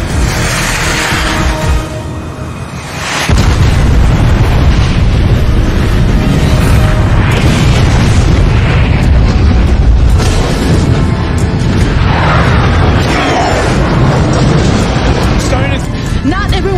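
Action-film sound mix: dramatic music, then a little over three seconds in a loud explosion whose deep rumble carries on under the music.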